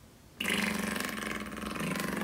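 A teenage boy's voice making one long, steady-pitched vocal noise that starts suddenly about half a second in and holds for about two seconds.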